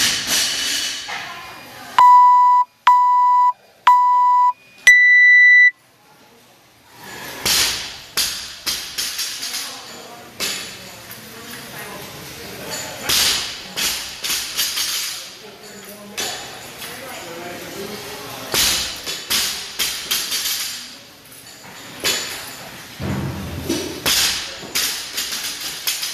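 Workout countdown timer giving three short beeps about a second apart, then a longer, higher start beep. After that a loaded barbell with bumper plates is lifted and set down over and over, with repeated clanks and thuds.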